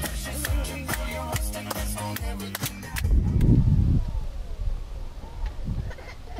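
Background music with a plucked-guitar feel and sharp percussive hits, which ends about halfway through; a short burst of low rumbling noise follows, then quieter outdoor ambience.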